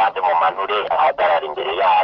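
Speech only: a man talking into a handheld microphone, in short phrases with brief pauses.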